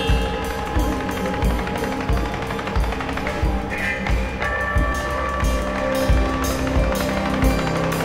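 Live string ensemble of violins, cellos and double bass playing sustained notes over a steady low beat that thumps about every three-quarters of a second.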